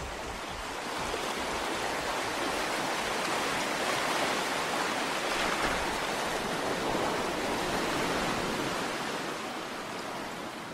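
Steady rushing of water, an even noise without rhythm that swells a little after the first second and eases slightly near the end.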